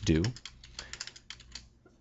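Typing on a computer keyboard: a quick, irregular run of keystrokes as code is entered.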